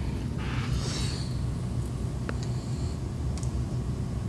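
Steady low room rumble, with a faint click about two seconds in and another near the end.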